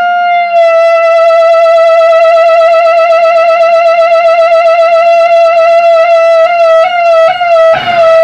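Electric guitar, a Stratocaster-style instrument through an amplifier, holding one long, high, singing note with a steady wavering vibrato. Near the end the note is broken off and re-struck a few times, then a fuller, denser passage starts just before the end.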